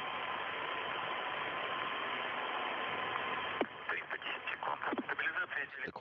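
Static hiss of an open radio voice channel with a faint steady tone, cutting off with a click about three and a half seconds in. Faint radio speech follows.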